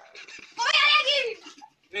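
A single high-pitched vocal cry without words, a little under a second long, rising and then falling in pitch.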